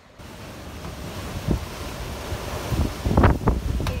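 Strong gusty wind buffeting the microphone, the gusts building and at their strongest about three seconds in.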